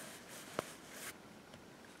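Faint rustling of fibre toy stuffing and knitted fabric as fingers push the stuffing into a knitted ring, with one small click a little after half a second in.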